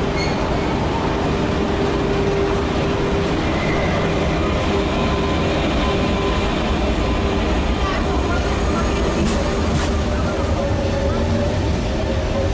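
Double-deck electric commuter train pulling out of an underground station, its steady running noise filling the platform. A steady tone fades in the first half, and a whine rises near the end.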